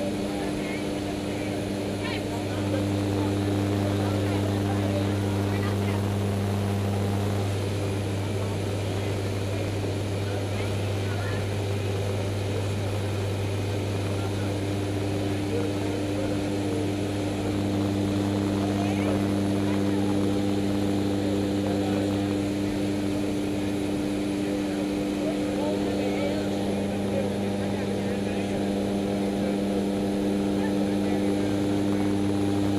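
Propeller aircraft engines heard from inside the cabin: a steady, deep drone with a hum whose upper tones fade out for several seconds midway and then return.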